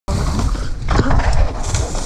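Wind buffeting and rumble from tyres on a dirt forest trail, picked up by a mountain bike camera during a descent, with short vocal sounds from a rider near the start and about a second in.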